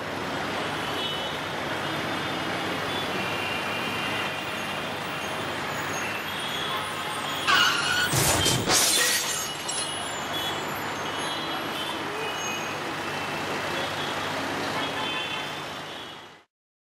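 Steady street traffic noise. About eight seconds in it gets louder for a second or two, with a brief rising screech.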